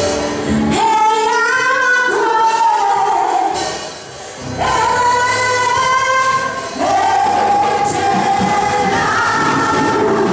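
A woman singing a gospel worship song into a handheld microphone, in long held notes, with a short break between phrases about four seconds in.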